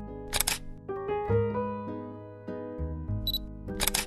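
Gentle background music with a camera shutter sound twice, a double click near the start and again near the end, the second one preceded by a short high autofocus-style beep.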